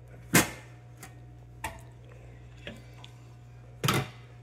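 Knocks and clicks of a cabinet popcorn machine being handled: one sharp knock about a third of a second in, a few light clicks, then another sharp knock near the end, over a steady low hum.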